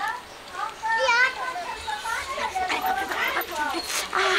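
A woman's high-pitched, quavering cries of "aah" several times over, acted as groans of pain from an upset stomach.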